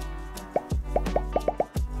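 Background music with a run of short rising plop sound effects, coming faster near the end.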